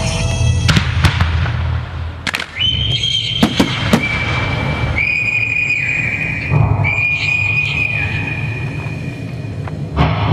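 Several sharp firework bangs and cracks in the first four seconds, over the display's accompanying music, which holds long, high, steady tones.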